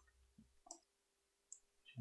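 Faint computer mouse clicks, about three short clicks spread across two seconds, as gradient stops are picked and dragged in an image editor.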